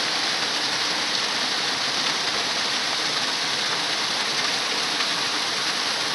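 Steady, hissy rush of a small waterfall spilling over a weir into a rocky stream.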